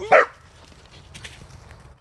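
An English cocker spaniel barks once, loudly, right at the start. Rustling and crackling in dry grass and brush follows.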